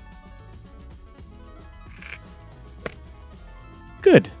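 A golf bunker shot played over steady background music: a short sandy splash of the club through the sand about halfway through, then a sharp click a little under a second later.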